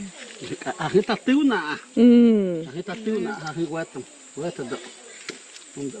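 A man and a boy talking in a rainforest field recording. About two seconds in, one voice draws out a word in a long sliding tone. A steady high-pitched drone of insects runs behind the voices.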